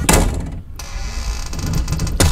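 Cartoon crash sound effect of a wall being smashed through: a sudden impact followed by a steady low rumbling.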